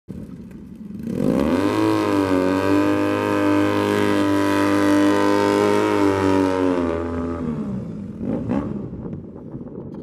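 Triumph Thruxton parallel-twin motorcycle engine revved up and held at high revs for about six seconds while the rear tyre spins in loose dirt in a burnout. The revs then drop, with one short blip about eight and a half seconds in.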